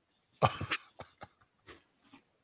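A man laughing: one loud burst of laughter, then a few short, fainter laughs trailing off.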